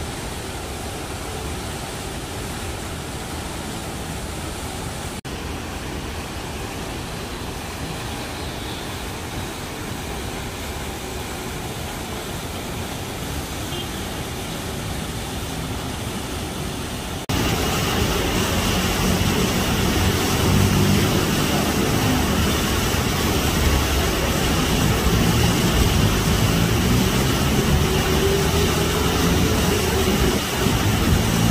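Steady outdoor city noise: fountain water splashing mixed with the hum of road traffic. A little past halfway it jumps louder, with a heavier low rumble.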